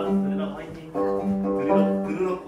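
Gayageum (Korean plucked zither) being played: plucked notes over a held low note, with new notes struck at the start, about a second in, and again near the end.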